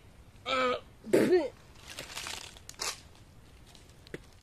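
A man's pained coughing and groaning: two short voiced groans in the first second and a half, then breathy exhalations.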